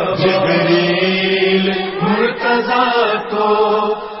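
A man's voice chanting an Urdu manqabat (devotional praise poem), drawing out long wavering melodic notes without clear words; one held note gives way about halfway through to a new phrase that rises in pitch.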